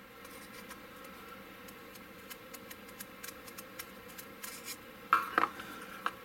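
A small round file scraping inside a hole in a plastic model hull, widening it to take a 5 mm magnet: faint, quick, scratchy strokes. A brief louder sound about five seconds in.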